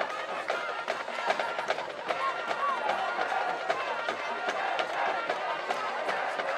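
Marching band playing with drums under a stadium crowd's shouting and cheering.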